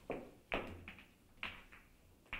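Three sharp clicks with short ringing tails, spaced unevenly, at the start, about half a second in and near a second and a half: pool balls knocking together.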